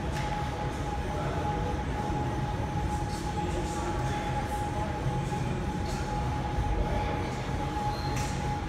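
Steady mechanical drone: a low rumble with a constant thin whine over it, unchanging throughout, with a few faint light ticks.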